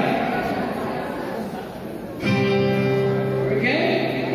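A chord strummed on an acoustic guitar, starting suddenly about two seconds in and held for about a second and a half.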